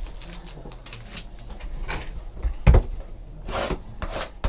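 Sealed cardboard trading-card boxes handled on a tabletop: small knocks and rustles, a thump a little past halfway, then a short scraping sound near the end as a box cutter starts slitting a box's plastic shrink wrap.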